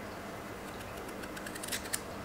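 Kitchen knife cutting through a raw potato held in the hand: a run of small crisp clicks and scrapes, starting about a third of the way in and growing louder and quicker toward the end.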